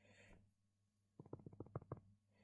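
Faint, quick run of about eight computer mouse clicks in the last second, operating an on-screen calculator emulator, after a brief faint hiss at the start; otherwise near silence.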